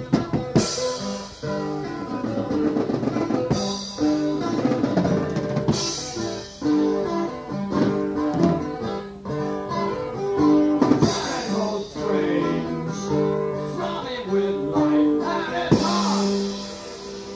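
Live instrumental passage from an audience recording: a drum kit with cymbal crashes every few seconds under held, changing chords from guitar or piano.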